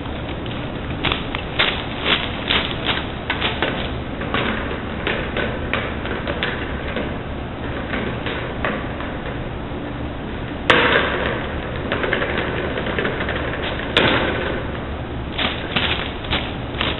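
A run of light taps, then two sudden loud crashes about three seconds apart, the first ringing on for a few seconds, over a steady hum.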